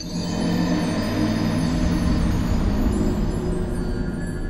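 An ominous, dark music sting used as a 'YOU DIED' death screen effect: a sustained chord with a heavy deep low end, held steady with no breaks.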